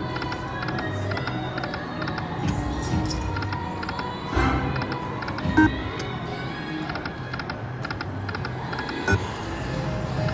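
Buffalo Gold video slot machine spinning its reels several times in a row: rapid clicking reel-spin sounds over the machine's music, with a few sharper clicks as spins land.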